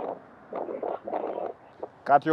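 A man's voice, low and breathy, in a few short murmurs.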